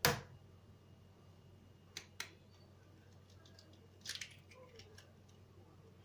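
A few short, sharp clicks and taps over quiet room tone. The loudest comes right at the start, two more follow about two seconds in, and a quick cluster comes about four seconds in.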